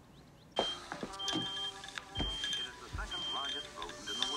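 A short high electronic beep repeating about once a second, alarm-like, from the film's soundtrack, over held musical tones, with a few soft knocks.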